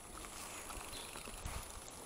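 Faint low rumble with scattered light knocks as an e-bike rolls slowly across a tarmac road.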